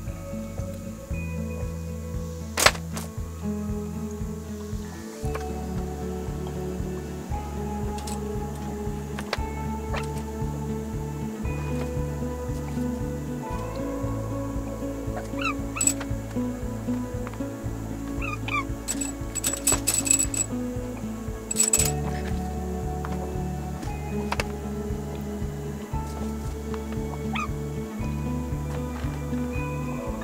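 Background music with a steady beat and repeating bass pattern, with a few light sharp clicks now and then, the loudest about two and a half seconds in and a cluster about 19 to 22 seconds in.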